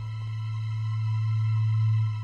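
Background score: a low, steady bass drone that slowly swells in loudness, with faint high held tones above it.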